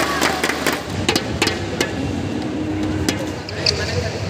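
Indoor badminton hall ambience: background voices with scattered sharp knocks and a few short high squeaks near the end, all echoing in the large hall.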